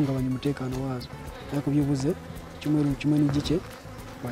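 A man talking, with honeybees buzzing around the wooden box hives behind him.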